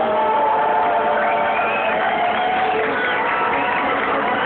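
Concert audience cheering and whooping as a song ends, with scattered shouts over the applause.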